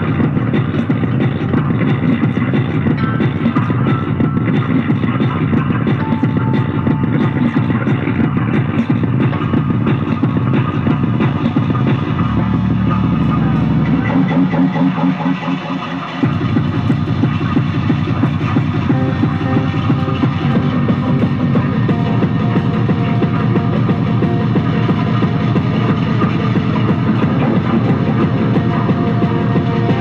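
Loud live electronic music made with guitar and tabletop electronics and effects, a dense continuous texture. A low held tone comes in about twelve seconds in, and the sound briefly dips just before sixteen seconds before the full texture resumes.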